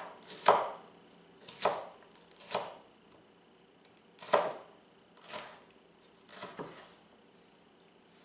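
Kitchen knife slicing stacked red bell pepper into thin strips on a wooden cutting board: about six separate cuts, each ending in a knock of the blade on the board, roughly one a second.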